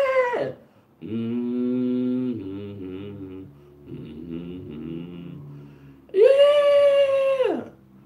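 A man singing slow, wordless held notes: a steady lower phrase about a second in, softer wavering notes in the middle, then a loud, higher note held for over a second near the end.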